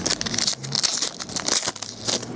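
Foil wrapper of a 2010 Panini Crown Royale football card pack being torn open by hand, crinkling and crackling in a run of short rustling bursts.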